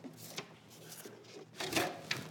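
Paper and red plastic cups being handled on a wooden tabletop: a few faint ticks, then a louder quick rustle of paper near the end.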